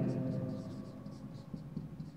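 Marker pen writing on a whiteboard: faint scratchy strokes as a word is written out.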